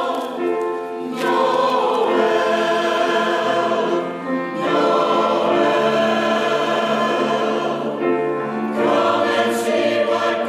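Mixed church choir, men and women, singing in harmony with long held chords in phrases, with short breaths between phrases about a second in, around four and a half seconds and near nine seconds.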